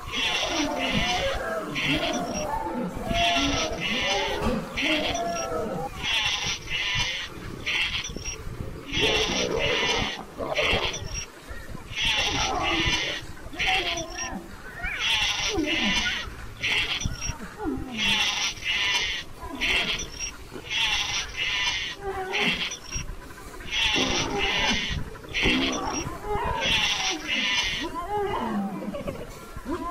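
Lions growling and calling in uneven bursts, over a high hissing pattern that repeats about every three seconds.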